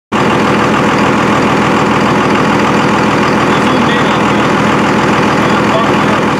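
Twin-turbocharged Cummins 5.9-litre inline-six diesel in a Dodge Ram 2500, idling steadily and loudly close by.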